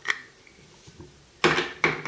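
A faint click, then two sharp plastic clacks close together a little after halfway: the lens covers being taken off a Nikon P-223 rifle scope and set down on a wooden table.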